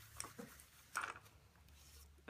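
Faint, brief rustles and scrapes as a sheet of watercolour paper is turned by hand on a cloth mat, over a steady low hum.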